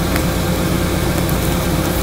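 Steady low hum with hiss, unchanging throughout, with a faint steady tone above it.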